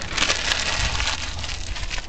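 A glossy magazine page rustling and crinkling as it is swirled over wet spray paint and peeled off the poster board. The papery noise is loudest in the first second and then carries on more softly.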